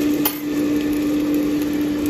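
Kitchen appliance fan running with a steady hum, with one sharp click about a quarter second in.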